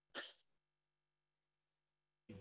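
Near silence, broken just after the start by one brief breathy sound from a person, over a faint steady hum.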